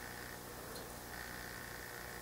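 Quiet room tone: a faint, steady low hum with light hiss, no distinct sounds.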